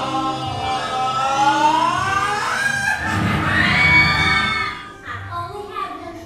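A musical-theatre song with a singer over accompaniment, holding long notes that sweep upward. About five seconds in the song breaks off and quieter music takes over.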